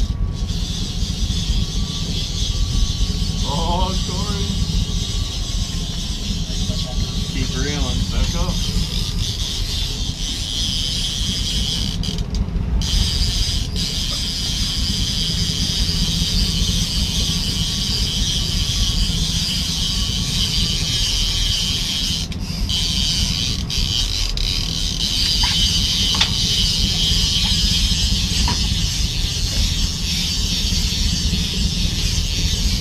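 Steady low rumble and hiss aboard a charter fishing boat under way: its engine running, with wind and water noise on deck. Two brief, wavering high-pitched cries stand out about four and eight seconds in.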